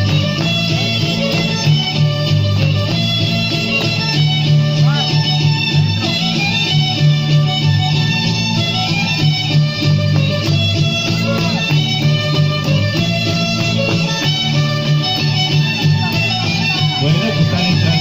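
Violin and strummed guitars playing a son, the dance music for the masked dancers.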